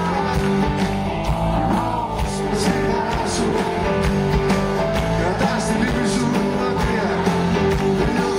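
Live rock band playing: drum kit with cymbal hits, electric guitar and acoustic guitar, with a singing voice over the band.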